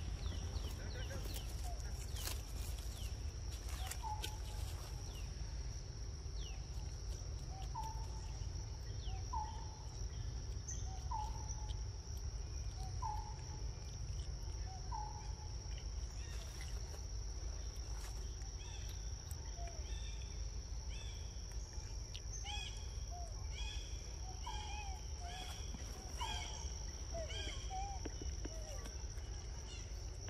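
Forest ambience: a steady high insect drone over a low rumble, with a bird giving a short call about every second and a half, then a faster run of chirps later on. A few light clicks near the start.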